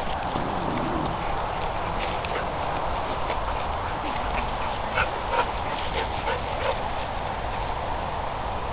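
Two dogs playing and chasing each other, with a few short dog yips about five to seven seconds in, over a steady background noise.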